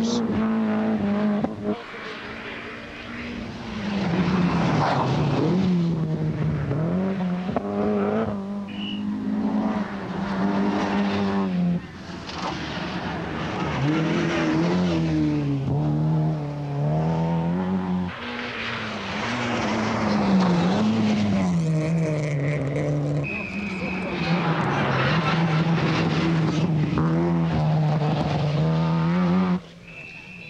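Rally car engines revving hard and changing gear as cars race past one after another on a tarmac stage, the note rising and dropping repeatedly. There are brief high-pitched squeals about two-thirds of the way through.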